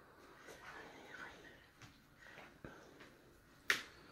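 Phone being handled while it films: faint rustling and a few soft clicks, then one sharp click about three and a half seconds in as the phone is tilted.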